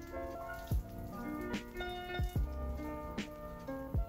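Background music: held chords changing every second or so over a slow, soft beat.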